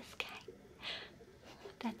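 A woman's soft whispered voice: a breathy, unvoiced whisper about a second in, a short click just after the start, and quiet speech starting again near the end.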